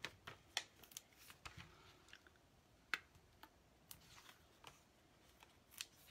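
Near silence broken by about a dozen faint, scattered clicks and taps of hands handling small paper pieces and foam adhesive dimensionals on a craft desk.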